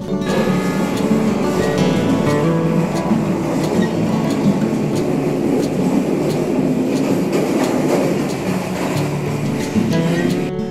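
Lodaya passenger train running, a steady rumble and clatter of wheels on rail heard from inside the carriage, under acoustic guitar background music.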